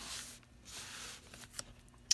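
Paper sale flyer rustling as it is handled, in two soft stretches, followed by a few small clicks near the end.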